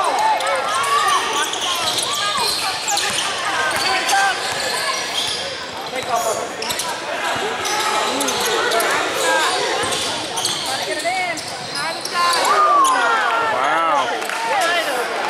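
A basketball bouncing on a hardwood gym floor as players dribble it during a game, with voices around it.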